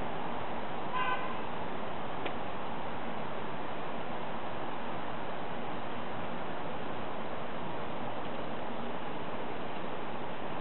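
Steady outdoor background hiss, with a brief distant car horn toot about a second in and a faint single click shortly after.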